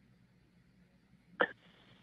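Mostly near silence on the line, broken about one and a half seconds in by a single very short vocal sound from a person, a clipped blip of voice.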